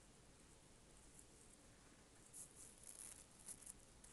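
Near silence, with faint soft scratching of a makeup brush stroked over the skin in a short cluster during the second half.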